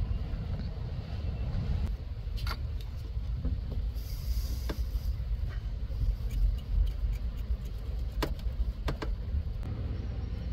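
A steady low rumble with a few sharp clicks scattered through it, about four in all, as a metal ground-cable lug is handled and set against its bolt-on ground point.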